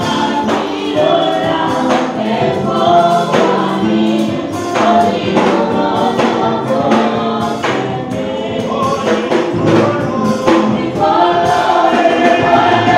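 Congolese gospel choir of women singing a worship song together, with percussion struck in time.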